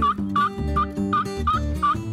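Wild turkey calling in a steady series of short, evenly spaced notes, about three a second, over background music with a beat.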